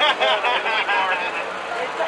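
People talking: a nearby voice for the first second and a half, over a general murmur.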